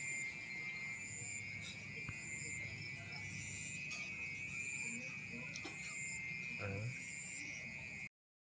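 Insects chirping steadily in the background: a constant high trill with shorter, higher chirps repeating about once a second. A brief low vocal sound comes near the end.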